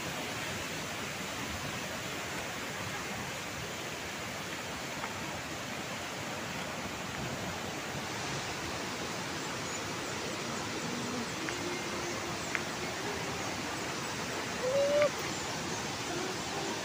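Steady rushing of water from a wide, multi-tiered cascade waterfall and the river below it. A brief voice sounds near the end.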